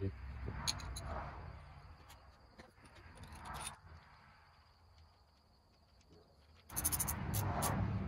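Hands handling and fitting a cast-iron oil pump and its strainer pickup into an engine block: light metal clicks and rubbing in spurts, with a quiet pause in the middle.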